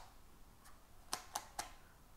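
Faint small plastic clicks from a cheap dash camera's swivel screen being turned on its hinge and handled: one at the start, then three close together about a second in.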